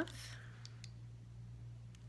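A few faint clicks from small lip-color tubes being handled, over a steady low hum.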